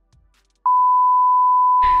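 A single steady electronic beep at one unchanging pitch. It starts abruptly after about half a second of silence and lasts about a second and a half: a tone edited in at a cut to black.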